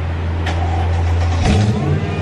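Mercedes-Benz E500's V8 engine idling with a steady low hum, then rising to a fuller note about one and a half seconds in.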